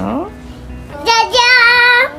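A young child singing: a short falling phrase ends at the start, and about halfway in she holds one long, high, slightly wavering note.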